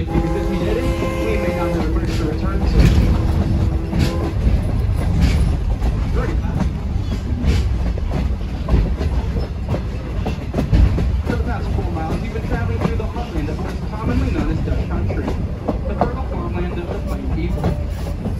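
Railroad passenger coach rolling along behind steam engine 89: a steady rumble of wheels on the rails with scattered clicks from the rail joints. A steady held tone sounds through the first four seconds and then stops.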